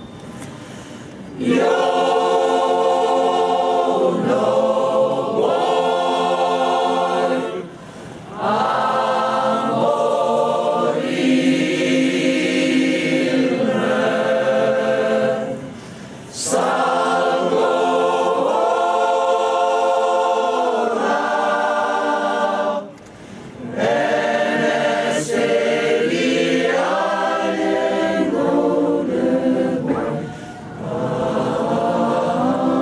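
Mixed choir of men's and women's voices singing a cappella in long held phrases, with a short pause for breath between phrases about every seven to eight seconds.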